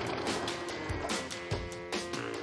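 Background music with held notes and a soft beat.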